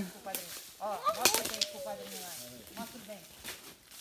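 Several people talking in the background, mixed with a few sharp crunches of footsteps on dry leaf litter and twigs, clustered about a second in.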